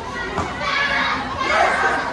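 A crowd of children's voices: overlapping chatter and calls.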